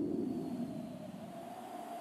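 Steady low hum of distant city traffic, with a faint steady tone running through it.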